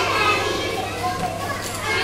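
A roomful of young children chattering and calling out at once, many overlapping voices with no single speaker standing out, over a steady low hum.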